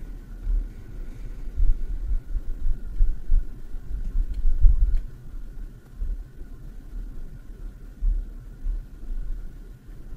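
Low, uneven rumble that swells and fades, with a faint steady high whine beneath it and a few faint clicks.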